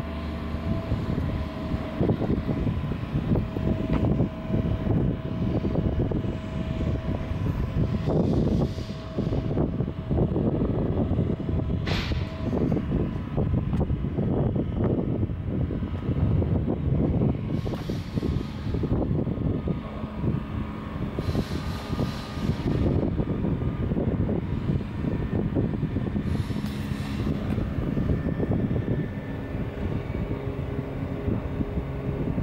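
Kubota B2230 compact tractor's three-cylinder diesel engine running at idle, a steady low drone, with a single sharp click about twelve seconds in.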